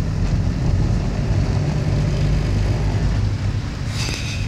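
Steady engine and road rumble heard inside the cabin of a moving car.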